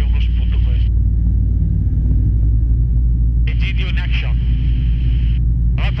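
Light aircraft engine droning steadily, heard inside the cockpit of an Alisport Yuma ultralight. A voice comes through the headset intercom in two short bursts, at the start and about midway.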